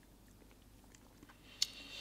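Quiet mouth sounds of someone tasting a sip of whisky: a sharp click of the lips about a second and a half in, then a soft hiss of breath drawn over the spirit in the mouth.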